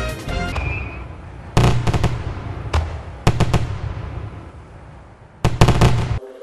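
The tail of a channel jingle fades out, then fireworks go off in a series of sharp bangs, some single and some in quick clusters, each dying away. The biggest burst of bangs comes near the end.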